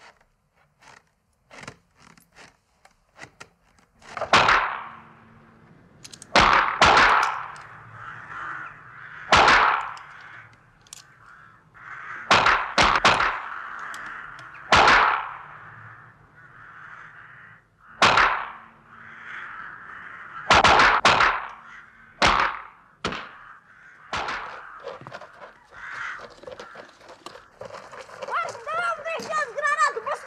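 Small-bore TOZ-8 training rifles firing single shots, more than a dozen at irregular intervals, some in quick pairs, each echoing off the concrete walls of a rifle range. A few faint clicks come in the first seconds before the shooting starts.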